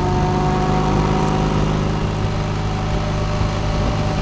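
Motorcycle boxer-twin engine running at a steady cruising speed, picked up close to the cylinder, with wind and road noise.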